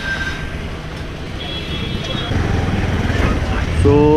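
Motorcycle engine running with a low, steady rumble that gets louder a little over two seconds in as the bike pulls away from the fuel pump.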